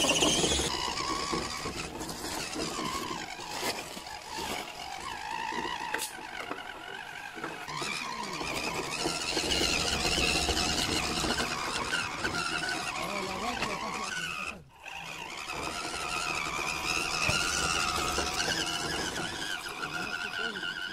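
Whine of a Tamiya CC02 radio-controlled crawler's electric motor and low-gear transmission, rising and falling in pitch as the throttle changes. The sound drops out briefly about fifteen seconds in.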